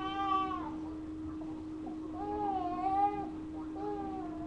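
Baby making two drawn-out, whiny wailing vocalizations, one at the start and a longer one about two seconds in, over a steady electrical hum.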